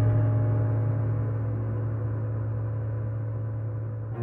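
A deep, ringing gong-like note from the film's score, slowly dying away.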